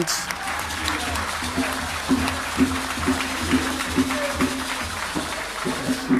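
A room full of people applauding, with a short musical note repeating about twice a second through the clapping from about a second and a half in.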